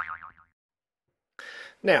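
A springy 'boing' sound effect, its pitch wobbling as it dies away about half a second in.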